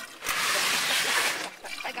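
Water splashing in a rush lasting about a second.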